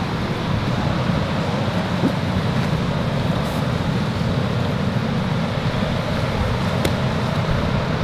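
Steady low rumbling background noise, even throughout, with no speech.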